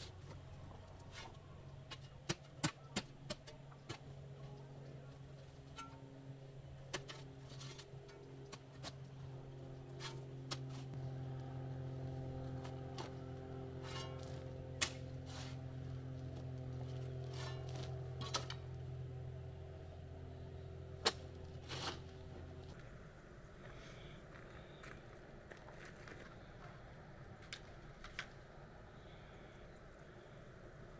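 A shovel working rocky soil and base rock, giving scattered sharp scrapes and clicks, over the low steady hum of an engine running that cuts off suddenly a little over two-thirds of the way through.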